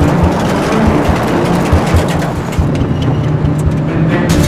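Vehicles driving, with engine and road rumble, mixed with a dramatic film score that holds steady low notes.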